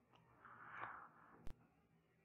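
Near silence: a faint breath-like exhale and a single sharp click about one and a half seconds in.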